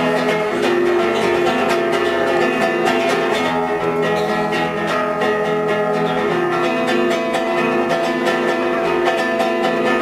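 Acoustic guitar strummed in a steady rhythm with a cajón box drum struck by hand; an instrumental passage with no singing.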